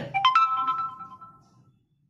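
A three-note rising electronic chime: three bell-like notes struck in quick succession, low to high, each ringing on and fading out by about a second and a half.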